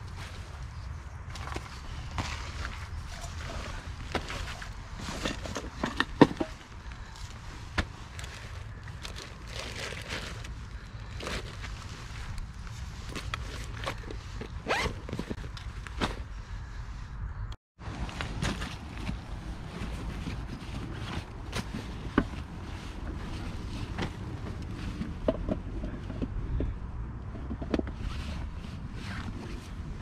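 Camping gear being handled and packed: fabric pouches and a canvas rucksack rustling, with irregular small knocks and clicks as items are moved, over a steady low rumble.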